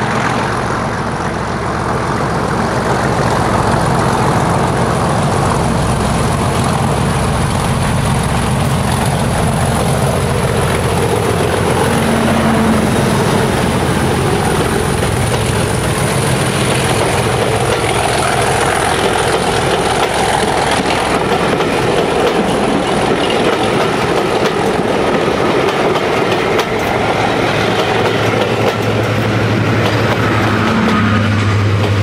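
An English Electric Class 37 diesel locomotive working hard under power as it approaches and passes close by. Its engine note then gives way to the steady rumble of the coaches' wheels running past on the rails. A low engine note builds again near the end.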